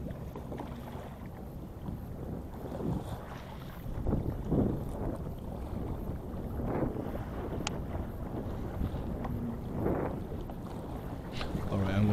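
Choppy sea water sloshing and lapping against the hull of a small fishing boat, in soft surges every few seconds, with wind on the microphone. A single light click about two-thirds of the way through.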